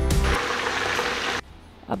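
Garlic-ginger paste frying in hot oil: a loud sizzle lasting just over a second, which cuts off suddenly.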